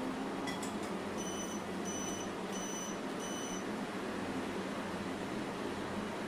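Four short electronic beeps from a kitchen appliance, about two-thirds of a second apart, over a steady fan-like hum.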